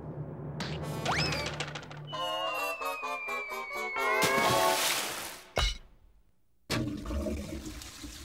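Cartoon sound effects over orchestral music: a quick rising slide-whistle about a second in, then a long falling whistle for a dive, ending in a loud splash of water about four and a half seconds in. After a second of near silence a steady rushing noise starts near the end.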